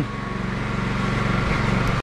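Steady hum of a running electric motor, even and unchanging.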